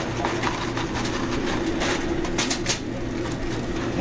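Steady mechanical hum of a fast-food restaurant's drive-thru and kitchen, with scattered sharp clicks and a quick cluster of several clicks a little past halfway.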